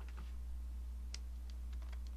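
Scattered light clicks and taps from a computer keyboard and mouse, about half a dozen, the strongest about a second in, over a steady low electrical hum.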